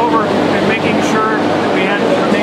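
A person talking over a steady low background noise.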